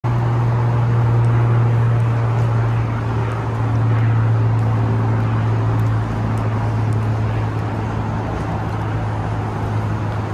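Steady road traffic noise with a constant low hum running under it.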